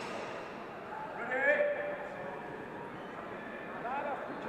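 Indistinct voices of people talking in a large, echoing sports hall, a steady murmur of chatter with one voice standing out briefly about a second in.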